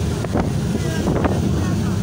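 Wind buffeting the microphone over water rushing and splashing along the hull of a boat running fast through rough sea.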